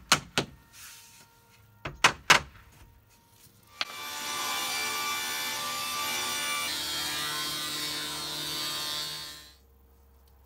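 A rubber mallet knocks four times on a wooden door sill, in two pairs. Then a sliding-table panel saw runs and cuts a board, a steady loud machine noise that stops abruptly near the end.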